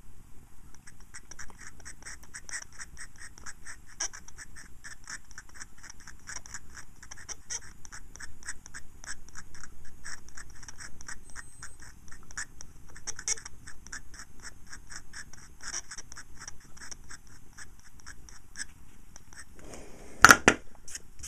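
Small pointed metal tool scratching over and over at the painted face of a panel meter scale, in short quick strokes at about three a second.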